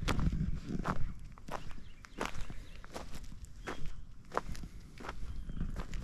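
Footsteps on a shore of loose, flat stone chips, about nine steady walking steps, each a short sharp crunch of stones shifting underfoot.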